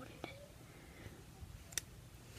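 Quiet handling of a small plastic rubber-band loom and hook, with two small, sharp clicks, a faint one just after the start and a clearer one near the end, as bands are twisted over the pins.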